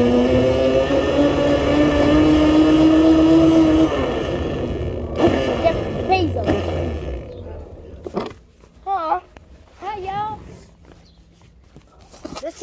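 Battery-powered mini motorcycle's electric motor whining as it rides, stepping up in pitch about a second in, then dying away after about four seconds as it slows. A few short voices follow near the end.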